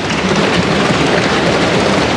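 Many members of parliament applauding by thumping on their desks: a dense, steady patter of hand blows.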